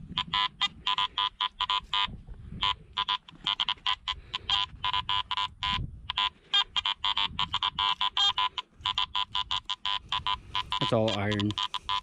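Garrett AT-series metal detector's audio chattering with rapid, broken tones, several a second, as the coil sweeps ground thick with iron, with one or two squeaks in there that might be a non-iron target.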